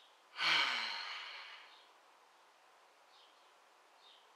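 A man's loud sigh about half a second in, his voice falling in pitch as the breath trails off over about a second and a half.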